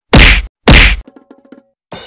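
Two loud whacks about half a second apart: the blows of a wooden stick beaten on a man lying on the ground, played for slapstick. Faint small knocks follow.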